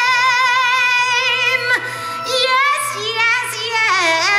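Live music: a high singing voice holds a long note with strong vibrato over a steady low held tone. About two seconds in the note slides down and breaks off, and shorter sliding vocal phrases follow.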